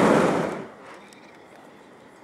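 Hot-air balloon's propane burner firing loudly, then shutting off about half a second in.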